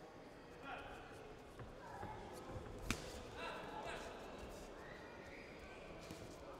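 Boxing-hall ambience: indistinct voices and shouts from ringside over the bout, with a single sharp smack a little before the halfway point.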